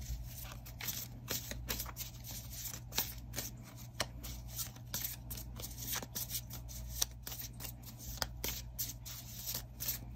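A mini tarot deck being handled and shuffled by hand, making irregular light clicks and taps of cards against each other, a few each second.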